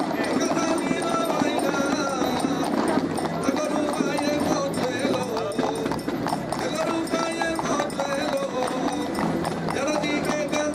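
Horses' hooves clip-clopping on a paved street as several horses walk past, over music with singing and a plucked string instrument, and people's voices.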